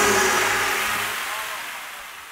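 The final held chord of a live brass band (trumpets, trombones, saxophone) is released, and its last tones and the hall's reverberation die away, fading steadily over two seconds.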